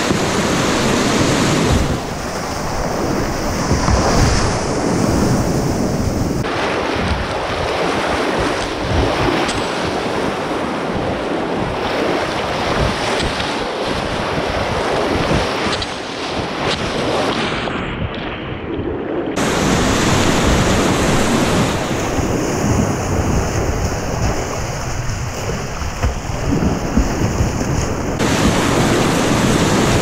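Whitewater rapids rushing and splashing around a kayak, heard close up from a camera at water level, with the sound changing abruptly several times. Past the halfway mark it goes muffled for about two seconds as water washes over the camera.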